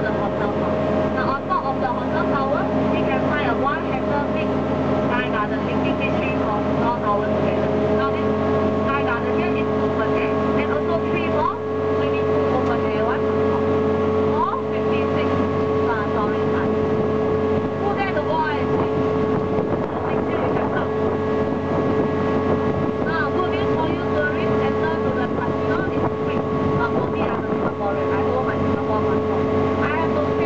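Engine of a DUKW amphibious tour vehicle running steadily while afloat, a constant drone, with people's voices faintly in the background.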